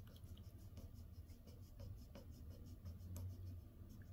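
Faint scratching of a pen colouring in a small box on a paper sheet, a quick steady run of back-and-forth strokes.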